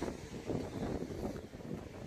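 Wind buffeting the microphone in uneven gusts.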